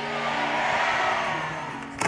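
Music: a steady held chord over an even haze of crowd noise, easing off slightly toward the end.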